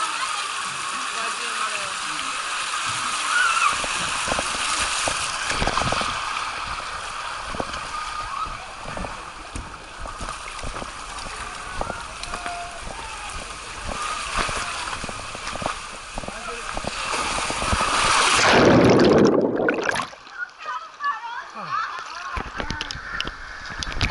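Water rushing and skin skidding on a fibreglass water slide as a rider slides down the flume, then a loud splash near the end as the rider plunges into the splash pool, after which the sound turns muffled.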